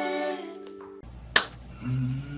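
An acoustic guitar chord and singing fade out. After a break, a single sharp finger snap comes about two-thirds of the way in, and a voice begins near the end.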